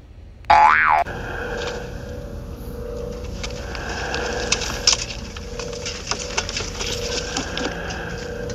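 A loud springy boing sound effect with a swooping pitch about half a second in, lasting about half a second. It gives way to a steady hum with hiss and a few faint clicks, the ambience of the film clip.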